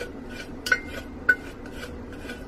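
Lye solution being poured and stirred into cold-process soap oils, the stirring stick clinking against the containers. There are two sharp ringing clinks, the first a little past the middle and the second about half a second later.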